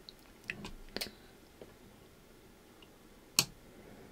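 A few faint, scattered small clicks in a quiet room, the sharpest about three and a half seconds in.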